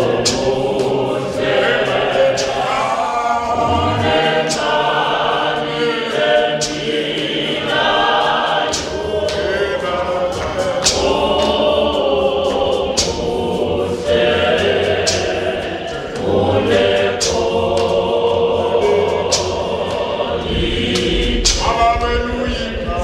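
A church congregation singing a Zulu hymn together in full voice, with many voices held in long sustained notes. Sharp beats cut through the singing about once a second.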